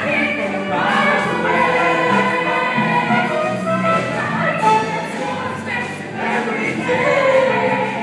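A high school musical cast singing together in chorus over instrumental accompaniment.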